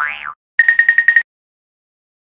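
Cartoon sound effects: a rising boing-like pitch glide ends just after the start, then comes a rapid run of about eight short, high beeps lasting under a second.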